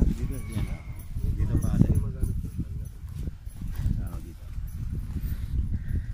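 Indistinct voices mixed with horse sounds, over a low rumble of wind and handling on the microphone.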